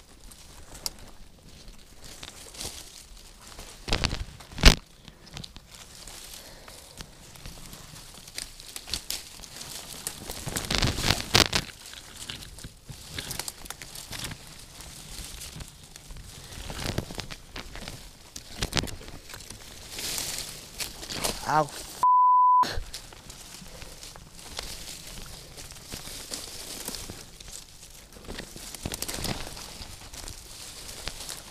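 Rustling and crackling of shrub branches and dry leaves, with footsteps, as someone pushes through thick brush, and a sharp snap about four and a half seconds in. About 22 seconds in, a short exclamation is cut off by a half-second steady censor bleep.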